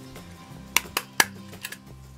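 Small hand stapler being pressed shut through two layers of cardstock, a few sharp clicks about a second in, over soft background music.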